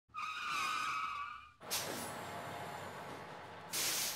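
Logo-intro sound effects: a wavering, high squeal for about a second and a half. It cuts off into a sudden rush of noise that settles into a steady hiss, and a second loud rush of noise comes near the end.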